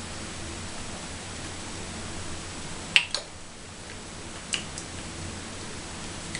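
Steady low hiss of a quiet small room, broken by a sharp click about three seconds in, a second small click just after it, and a fainter tick a second and a half later, as makeup tools are handled on a counter.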